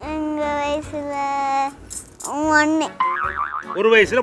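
A high voice singing long held notes: two steady notes, then one that swoops up and back down, then a quick warbling trill near the end.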